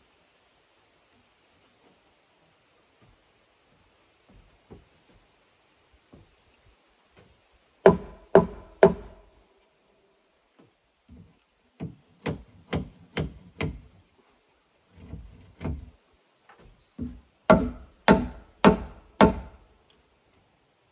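Wooden knocks from a short log section used as a mallet, struck upward against the porch's post-and-beam framing. The knocks come in bursts: three, then about six, then four loud ones near the end, each ringing briefly like a wood block.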